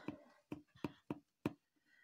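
Four short, light taps in just over a second: a glue applicator dabbing PVA glue onto fabric stretched over a cardboard box.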